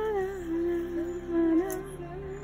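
Music: a woman singing a slow melody in long, held, gently wavering notes.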